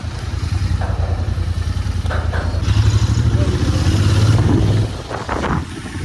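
Motorcycle engine running while under way, its low exhaust note steady. It grows louder for about two seconds in the middle as the rider accelerates, then eases off.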